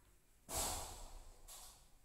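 A person's breath close to the microphone: a loud breath about half a second in that trails off, then a shorter, fainter one near the end.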